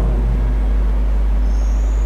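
Steady low electrical hum with buzzing overtones, strong and unbroken. A faint high thin tone rises briefly near the end.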